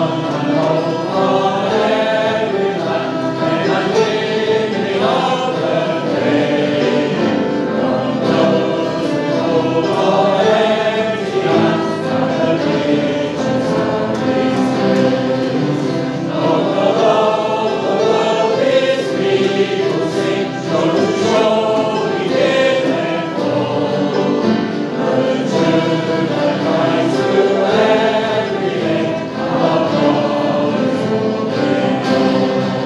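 Congregational singing of a worship song, led by a man's voice, with strummed acoustic guitar and violin accompanying.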